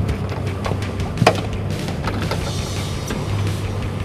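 A fish club striking a netted Chinook salmon's head with a sharp thump about a second in, to stun the fish. Underneath is the steady low hum of the boat's idling motor.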